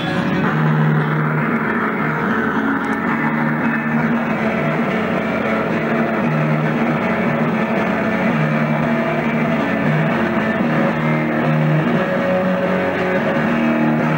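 Live rock band playing: electric guitar and bass guitar, in a lo-fi audience recording made on a MiniDisc recorder.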